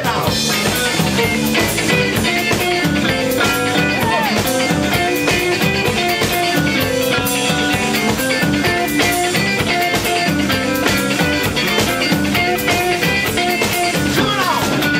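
Live blues-funk rock band playing an instrumental passage: electric guitars over a drum kit keeping a steady beat, with no singing.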